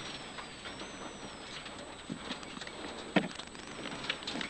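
Faint in-car sound of a rally car on a gravel stage: a low hiss with a thin wavering high whine and a few soft knocks, the clearest a little after three seconds in.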